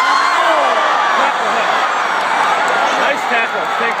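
A packed football stadium crowd yelling, many voices shouting over one another, loud throughout as a goal-line play is run.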